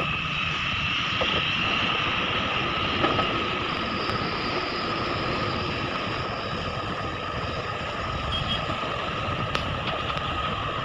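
Heavy diesel excavators running steadily under load while digging and loading a dump truck. A constant high whine sits over the low engine noise, with a sharp knock about three seconds in and a faint click near the end.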